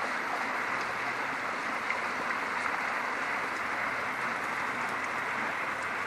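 Snowmelt runoff water flowing, a steady rushing sound.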